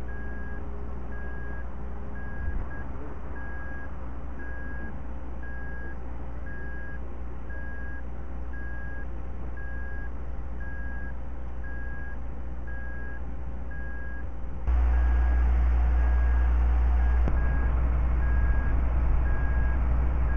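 A vehicle's reversing alarm beeping at an even pace over the low rumble of an idling engine. The rumble jumps suddenly louder about 15 seconds in.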